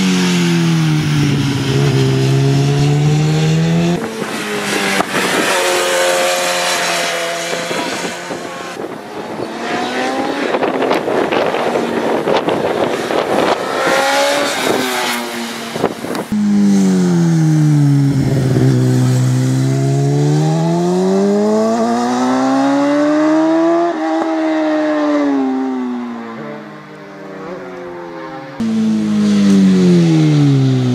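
Racing superbike engine at full race pace. The pitch falls as it slows for bends and climbs as it accelerates out, again and again. The sound breaks off and jumps several times.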